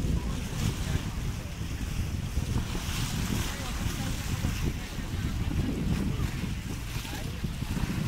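Wind buffeting the microphone in a steady low rumble, over choppy lake waves slapping and splashing against a stone shore edge.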